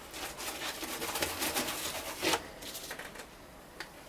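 Gloved hand dabbing and pressing resin-wet fiberglass reinforcement into the inside of a hollow armour thigh shell: a quick run of soft scratchy taps and rustles, with a louder bump a little past two seconds in and a faint click near the end.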